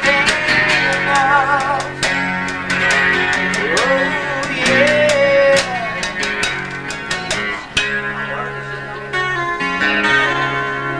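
Live rock band playing an instrumental passage of a ballad: a lead guitar melody with bent, wavering notes over bass, chords and drums with frequent cymbal hits.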